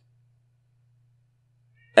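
Near silence: a pause in speech with only a faint, steady low hum.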